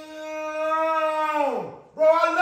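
A long held wailing cry from a person's voice at one steady pitch, which drops away in a falling slide near the end.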